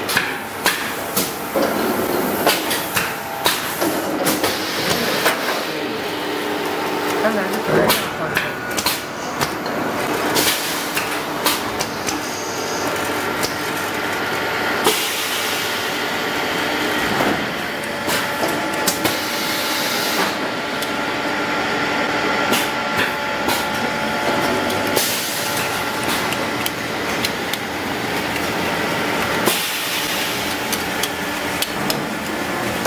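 Automatic wooden spoon hot pressing machine (ASP-300A) and its metal conveyor running: a steady mechanical din broken by frequent, irregular clicks and knocks as the wooden spoons are handled and carried along.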